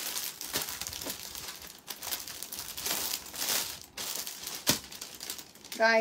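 Crinkling and rustling of something being handled, coming in several bouts, with a sharp click about three-quarters of the way through.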